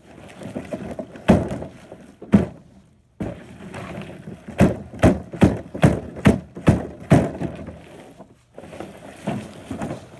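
A series of hard knocks and thumps. Two single knocks come in the first few seconds, then a quick run of about eight strikes at roughly two or three a second through the middle of the clip.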